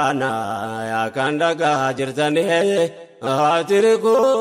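A man's voice chanting an Afaan Oromo manzuma (Islamic devotional nashiida) in a melismatic melody. A long held note comes near the start, then the line moves through shifting notes, with a short breath break about three seconds in.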